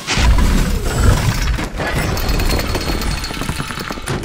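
Logo sting sound effect: a loud, rough rumbling noise that starts suddenly, with music mixed in, easing off near the end.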